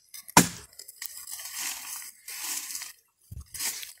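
Dry twigs, brush and branches crunching and rustling irregularly as stakes are worked loose from a dry jurema tree, with a sharp crack about half a second in.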